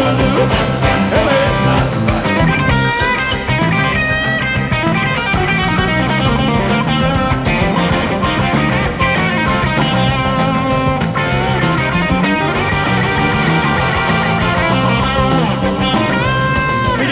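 Rock and roll instrumental break: a Telecaster-style electric guitar playing single-note lead lines with bent, wavering notes over a band backing of drums and bass.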